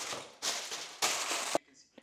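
Aluminium foil crinkling as a sheet is pressed down into a stainless steel bowl to line it, in three rustling stretches that stop about a second and a half in.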